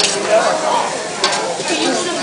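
Chopped onion and zucchini sizzling on a hot teppanyaki griddle while a metal spatula stirs and pushes them around, with a few sharp clicks of the spatula against the steel plate.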